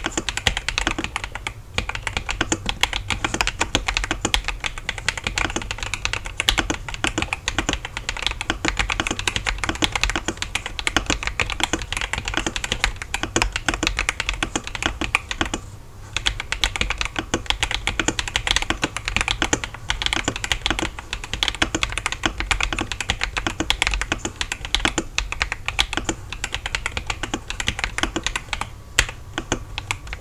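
Fast, continuous typing on a Yunzii B68 65% mechanical keyboard with a plastic case and Coco switches: a dense run of keystroke clacks with a short pause about halfway through.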